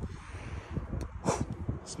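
Outdoor street ambience: a low steady rumble of distant traffic and wind on the microphone, with a quick sniff a little past halfway through, someone smelling food held close.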